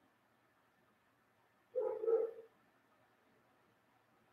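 A single short voice-like call about halfway through, under a second long and pitched, rising and falling in two swells, over quiet room tone.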